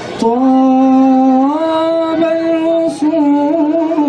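A man singing solo and unaccompanied into a microphone, holding long notes that bend slowly up and down in an ornamented, chant-like line. He takes short breaths right at the start and about three seconds in.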